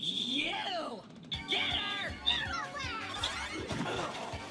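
A cartoon soundtrack played back at low level: background music with characters' voices and shouts.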